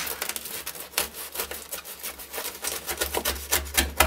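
Large kitchen knife sawing through the crust of a freshly baked olive-and-pepper focaccia on a cutting board: a run of irregular crisp crackles, several a second.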